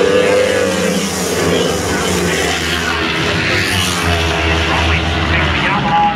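A pack of twin-cylinder flat track race motorcycles running loud at racing speed past the grandstand, several engine notes overlapping and rising and falling in pitch as they come through the turn.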